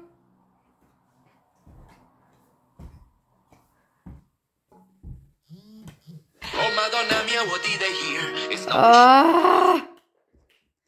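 A phone's timer alarm goes off about six and a half seconds in, playing a loud melodic ringtone: the 5-second time limit is up. Before it come faint, scattered clicks of CDs being handled and caught, and near the end a voice cries out over the ringtone.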